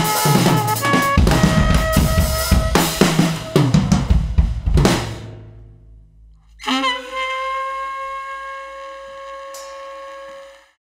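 Drum kit and saxophone playing together: busy snare and bass drum hits under short sax notes, dying away about five seconds in. Then, about a second and a half later, one long held note wavers briefly at its start and then sounds steady.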